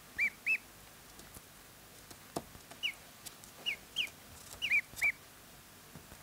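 Ducklings peeping: two short high peeps at the start, then about six more scattered through the last three seconds.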